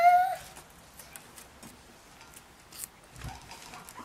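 A guinea pig's rising squealing call, ending about half a second in. After it come faint, scattered small clicks as the guinea pig nibbles and picks up a carrot slice.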